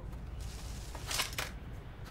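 Cartoon soundtrack sound effects: a low rumble with two short hissing noises a little past one second in.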